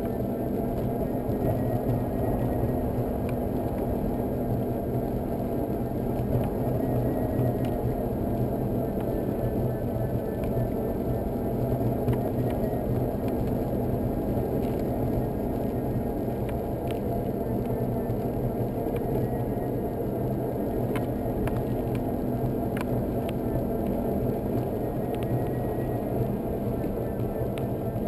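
Solowheel electric unicycle in motion on wet asphalt: a steady hum from its hub motor under a constant rumble of tyre and road noise, with a few small clicks.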